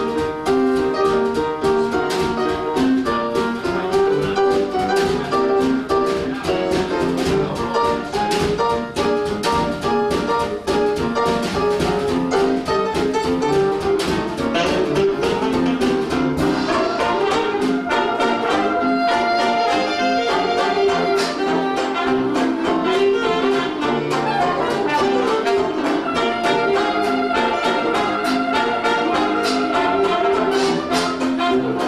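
Hot jazz band in the 1920s–30s style playing live: piano over a steady rhythm section, with a clarinet playing and long held notes in the second half.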